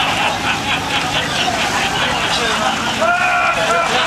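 Several people's voices calling out over the steady low hum of a heavy vehicle's engine running.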